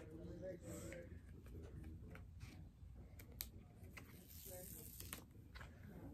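Faint rustling of paper being handled, with a few soft crackles spread through an otherwise quiet room.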